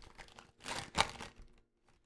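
Plastic trading-card pack wrapper crinkling as it is pulled open by hand, in two short rustles close together about a second in.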